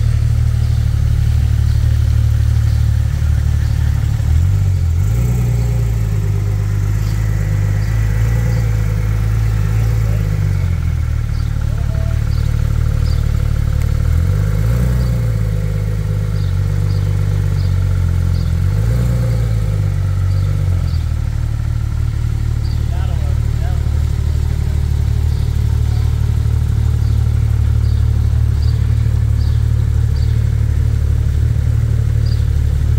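Porsche 911 flat-six engine idling steadily, with a few brief, slight rises in revs.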